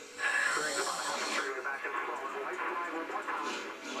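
Television race-broadcast sound played through a TV set's small speaker: NASCAR stock-car engines and crowd noise, with a step up in loudness just after the start and a thin sound lacking any low end.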